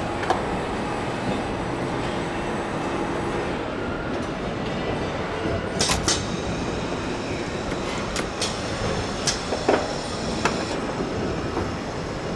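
Car assembly-line conveyor machinery running with a steady rumble and hum. From about six seconds in come a string of sharp metallic clanks and clicks.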